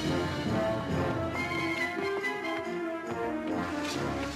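Orchestral background score with held notes.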